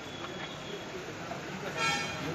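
A car horn toots once, briefly, near the end.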